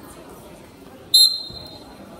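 One short, piercing referee's whistle blast about a second in, dying away briefly in the gym's echo, over low crowd chatter.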